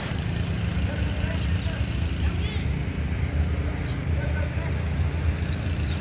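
Steady low rumble of city traffic, with faint voices in the background.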